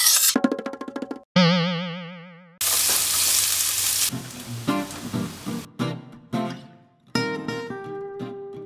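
Edited sound effects over music: a short rhythmic musical phrase, then a wobbling cartoon 'boing' that fades away over about a second, then a second and a half of loud sizzling from frying onions, then light plucked-string music.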